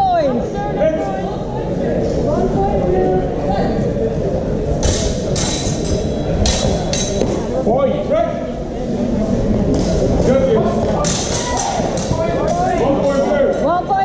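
Longswords clashing in a fencing exchange: sharp clicks and knocks in two clusters, about five to seven seconds in and again about eleven to twelve seconds in. They come over voices and chatter echoing in a large hall.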